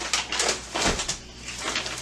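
A brown paper bag of bulk food rustling and crinkling as it is handled and set down on a table, with a soft thump about a second in.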